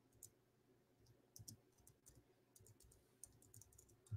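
Near silence with faint, irregular computer keyboard clicks, most frequent in the second half.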